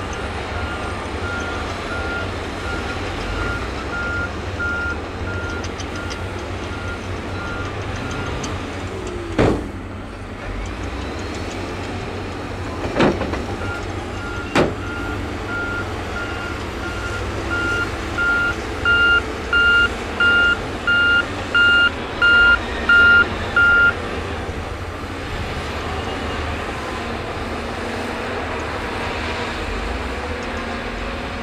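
Diesel engines of heavy earthmoving machines running with a steady low rumble, over which a reversing alarm beeps about one and a half times a second. The beeping pauses for a few seconds in the middle, comes back louder, and stops about two-thirds of the way through. During the pause there are three sharp bangs.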